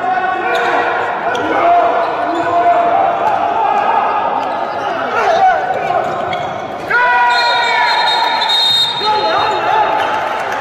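A handball bouncing and slapping on an indoor court, with men's voices calling out over it in a large, echoing hall.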